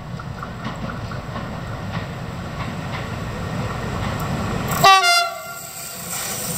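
Renfe class 253 (Bombardier TRAXX) electric locomotive hauling a container freight train, its wheel-on-rail rumble growing louder as it approaches. About five seconds in, the locomotive gives one short, loud horn blast.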